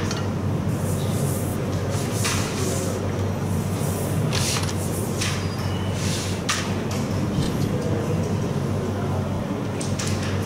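Wooden carrom coins clicking and clacking against each other and sliding on the board as they are gathered and arranged at the centre, in short irregular bursts, over a steady low hum.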